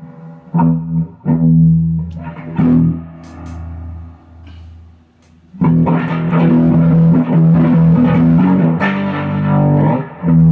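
Electric guitar played through a Strymon Deco tape saturation and doubletracker pedal on a flanging setting, with a little saturation added. A few separate strummed chords ring out and fade, then steady strumming starts about halfway through.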